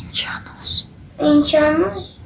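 A young boy talking: soft breathy sounds in the first second, then voiced words from just past the middle.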